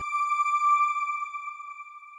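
A single high, pitched electronic chime, a TV channel's logo sting, that swells briefly and then fades away.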